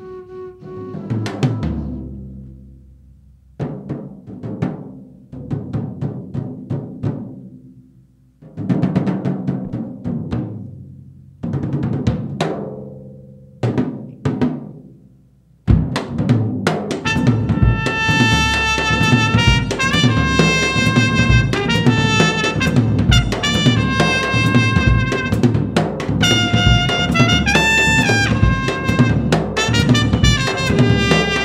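Free jazz: for about the first half, drum strokes in loose clusters, each ringing and dying away. About halfway through, a full drum kit comes in playing busily, and a cornet plays held, stepping lines over it.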